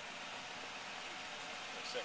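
A police cruiser's engine idling: a steady, low-level hum with no sharp events.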